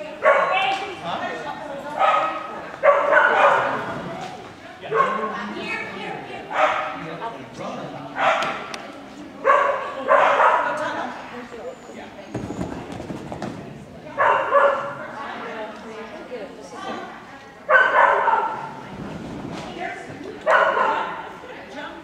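A dog barking over and over in a large echoing hall, one bark or a short run of barks every second or two.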